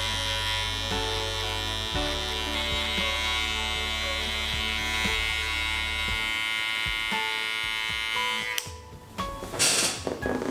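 Electric hair clipper buzzing steadily as it cuts clipper-over-comb. It cuts out about eight and a half seconds in, and a short rustling burst follows near the end.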